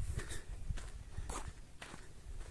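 Footsteps crunching on dry, sandy dirt ground, several separate steps.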